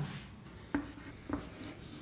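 Chalk writing on a chalkboard: quiet scratching with about three light taps of the chalk as the letters are formed.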